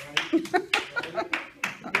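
A quick run of sharp hand claps, about five a second, with voices in between.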